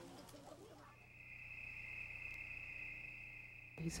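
Insects in jungle ambience, a steady high-pitched drone that sets in about a second in and holds on one pitch.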